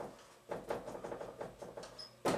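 Dry-erase marker writing on a whiteboard: a quick run of short, faint strokes starting about half a second in.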